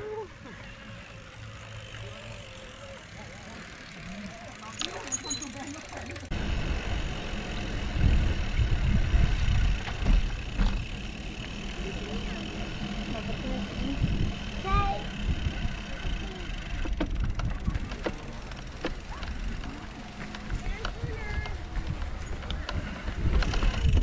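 Ride noise from a camera mounted on a moving e-mountain bike: tyres rolling and wind on the microphone make a low rumble that grows louder from about six seconds in, with a faint steady high whine over it. Faint voices come through in the quieter opening seconds.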